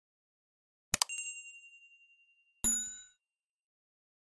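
End-screen subscribe-button sound effects: a sharp double click about a second in, with a ding that rings on and fades over about a second and a half, then a shorter, brighter bell chime as the notification bell appears.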